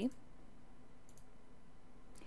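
Quiet room tone with a faint, short click about a second in.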